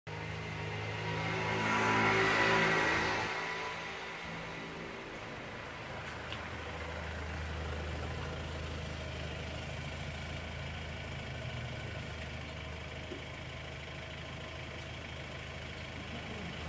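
A car passes on a wet road about two seconds in, its engine and tyre hiss swelling and fading, followed by a steady low engine hum.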